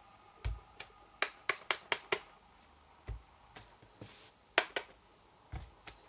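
Clear acrylic stamp block tapped onto an ink pad in quick light clicks and pressed down onto cardstock on the work surface with soft thumps, three times over. There is a brief brushing hiss about four seconds in.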